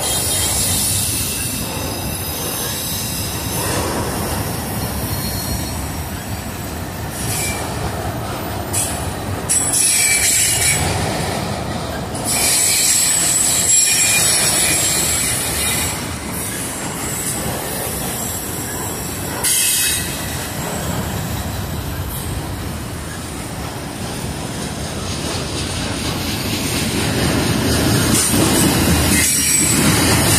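CSX autorack freight cars rolling past close by: a steady rumble of steel wheels on rail with a thin high wheel squeal running over it. It grows louder near the end.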